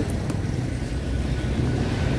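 Street traffic: a steady low engine rumble from motorbikes and tuk-tuks.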